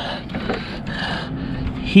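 Rubbing and rustling of insulated wires being pulled and handled inside a rooftop RV air conditioner.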